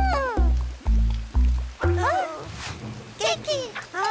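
Cartoon soundtrack: music with a heavy bass beat about twice a second, which stops about halfway through. Over it, cartoon characters make wordless cries that swoop up and down in pitch, continuing after the beat stops.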